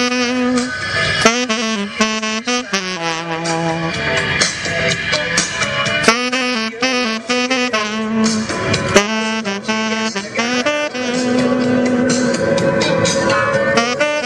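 Tenor saxophone playing a melody live over a DJ's electronic backing track with a steady beat.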